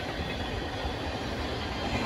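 A freight train of tank cars rolling past, heard as a steady, low noise of wheels on rail.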